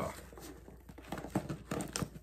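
A package being opened by hand: faint rustling and handling noises, with a few sharper clicks and taps in the second half.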